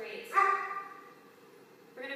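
A dog barks once, about a third of a second in, and the sound fades within about half a second.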